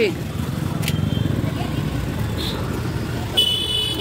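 Street traffic with a vehicle engine running close by, and a short, high-pitched horn toot near the end.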